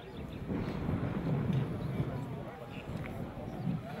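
A horse moving close by, its hooves thudding on soft ground, under a faint murmur of voices.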